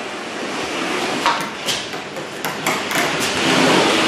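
Drywall flat box on an extension handle being run along a ceiling tape seam: a steady scraping swish as it spreads joint compound over the tape, with several sharp clicks along the way.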